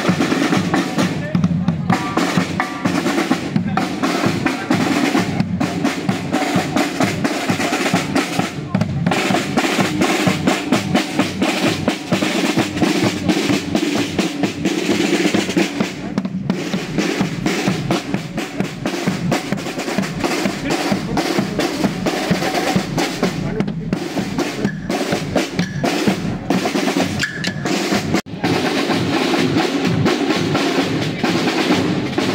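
Street band playing, led by a bass drum and snare drum with drum rolls, with wind instruments alongside.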